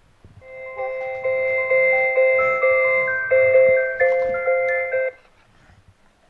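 Electronic tune played by a My First Sony EJ-M 1000 children's music toy: a run of clear, chime-like notes changing about twice a second, starting about half a second in and cutting off abruptly about five seconds in.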